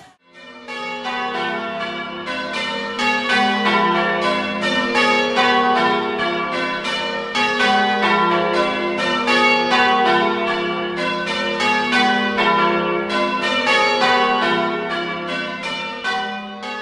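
Church bells ringing changes: a rapid, even run of strokes, several a second, starting just after the music cuts off.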